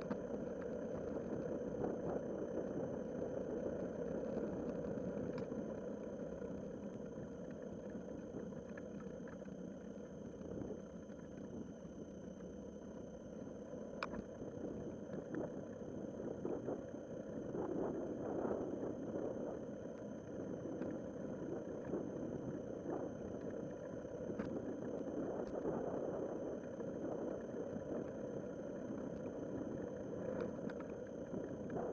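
Riding noise picked up by a bicycle-mounted action camera: a steady rumble of tyres on asphalt and wind on the microphone, with a few sharp clicks.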